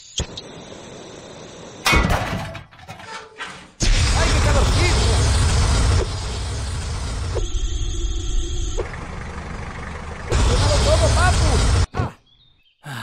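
Cartoon sound effects of a gas blowtorch hissing, then a sudden loud blast about two seconds in. It is followed by long, loud stretches of rushing fire and explosion noise with a deep rumble, which stop abruptly near the end. A voice cries out over the noise at moments.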